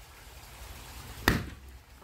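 A single sharp knock or click about a second and a quarter in.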